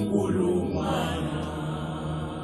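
Male voices singing the closing phrase of a song, the last notes held and slowly fading.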